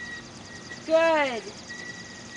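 A person's voice gives one short call about a second in, its pitch sliding downward, with no clear words.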